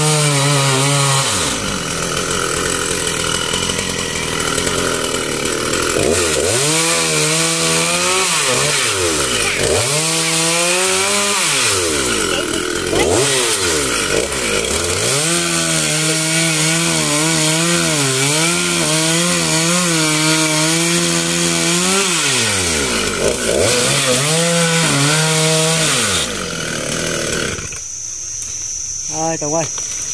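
Gasoline chainsaw cutting through a felled palm trunk, its engine pitch rising and falling as the throttle is opened and eased between cuts, and holding steady through one long cut in the middle. The engine cuts out near the end, leaving a steady high insect buzz.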